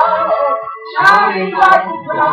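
A woman sings a gospel worship song into a microphone, with a short break in the line about half a second in. A sharp clap-like hit comes near the end.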